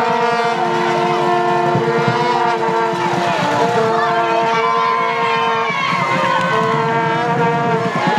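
Several long held horn-like notes sound together, each held for a second or more before shifting to another pitch, over a rough background of crowd voices.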